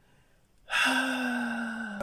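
A man's long voiced sigh after a short pause, a single held breath-tone lasting just over a second with its pitch sinking slightly.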